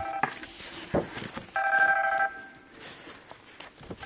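A steady electronic ringing tone sounds twice: the end of one tone at the very start, then a full one of about three-quarters of a second about a second and a half in. A single click comes between them, about a second in.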